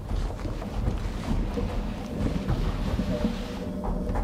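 Wind-driven millstones of a post windmill running, with grain feeding into them: a steady low rumble.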